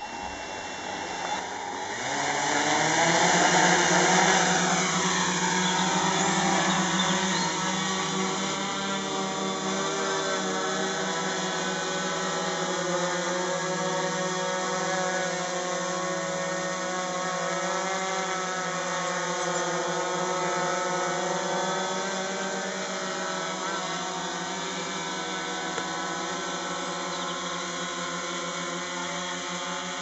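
F450 quadcopter's electric motors and propellers spinning up and lifting off, the pitch rising over the first few seconds and loudest during the climb. It then settles into a steady multi-toned buzz as it flies and hovers, the tones drifting slightly as the rotor speeds adjust.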